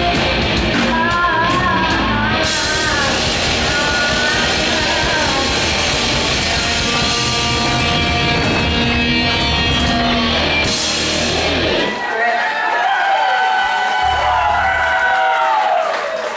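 Live rock band with distorted electric guitars, bass and drums playing loudly behind a woman singing. About twelve seconds in, the drums and bass cut out, leaving only higher-pitched sound to the end.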